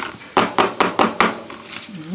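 A quick run of about six light knocks and clicks, hard plastic on plastic, as a clear plastic food container and its snap-on lid are handled.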